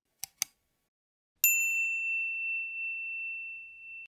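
Subscribe-button sound effect: two quick mouse clicks, then a single bright bell ding about a second and a half in that rings out for over two seconds as it slowly fades.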